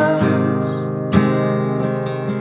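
Acoustic guitar strumming chords that ring on between strokes, with one sharp strum about a second in.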